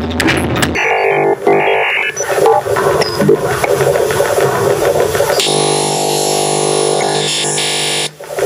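Live electronic noise music from laptop instruments, among them Soniperforma, which turns motiongrams of body motion into sound. Dense noise textures shift abruptly with brief dropouts; from about five and a half seconds in, a steady buzzing drone holds, then cuts off suddenly.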